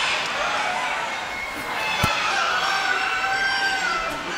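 A rooster crowing: one long, held call in the second half that dips slightly in pitch as it ends, over steady background noise. A single sharp click comes about halfway through.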